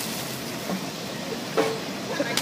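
Water from a large bucket pouring over a seated man and splashing onto him and the ground: a steady hiss. There is one short sharp knock about one and a half seconds in.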